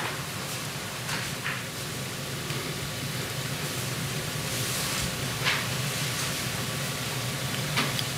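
Steady hiss of a courtroom microphone feed with a low electrical hum, and a few faint clicks or knocks.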